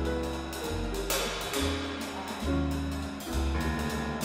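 Jazz piano trio playing: grand piano chords and lines over upright bass notes, with drum kit and cymbal time.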